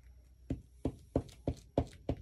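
A run of light taps, about three a second, from fingertips pressing glued paper pieces down onto a journal page.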